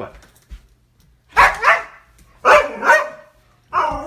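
A husky vocalising back at her owner: three loud barking yowls about a second apart, each a quick two-part outburst that slides in pitch. She is upset that he is leaving.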